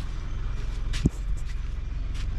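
Motorcycle engine idling with a steady, even low pulse, and a single sharp knock about a second in.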